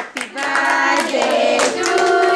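Several voices, women's and children's, singing together in long held notes while hands clap along.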